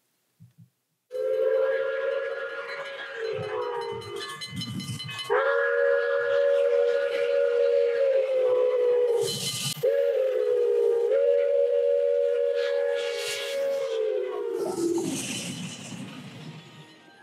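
A steam locomotive's chime whistle, Pere Marquette 1225's, sounds three long blasts that sag in pitch as each one closes, over the rush and hiss of the train passing. It is heard played back through a lecture hall's speakers.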